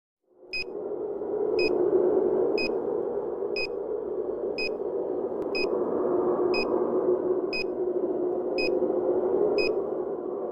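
Film-leader countdown sound effect: a short high beep once a second, ten in all, over a steady whirring noise.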